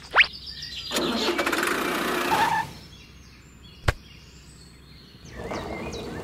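An engine-starting sound for a toy tractor: a rattling stretch of about a second and a half, led in by a quick rising whistle. Later there is a single sharp click and a softer stretch of rattling noise.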